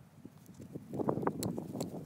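Agatized coral Clovis point being pressure flaked with an antler tool. From about a second in there is a scratchy grinding of antler on stone, with several sharp clicks as small flakes come off the edge.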